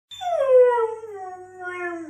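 A puppy howling: one long howl that starts high and slides steadily down in pitch.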